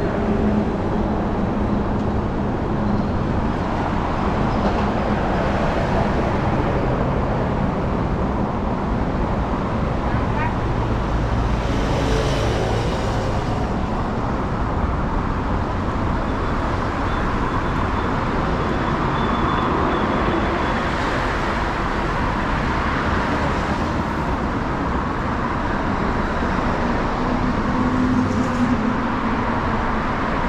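Steady road traffic noise, a continuous wash of passing cars.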